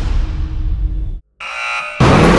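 Trailer sound effects: a deep rumble with a low hum cuts off abruptly about a second in. After a brief silence, a buzzing electronic tone sounds until the end.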